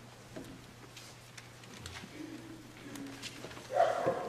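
Quiet church sanctuary between parts of a service: faint rustling and shuffling, then a short, louder creak near the end.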